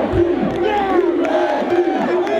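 A group of football players shouting and whooping together, many loud voices overlapping.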